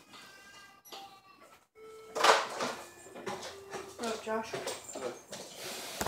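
Indistinct voices talking in a small room, faint at first and louder from about two seconds in.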